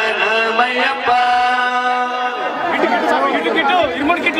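Devotional chanting in long, steady held notes, which gives way a little over two seconds in to a crowd of voices talking over one another.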